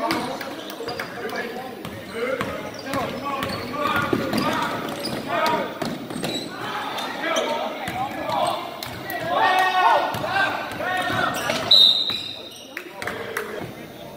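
A basketball bouncing on a gym court among people's voices, with a brief high-pitched squeak near the end.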